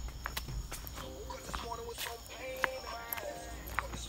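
Footsteps on a dirt trail: irregular sharp clicks and snaps underfoot, with quiet voices behind them.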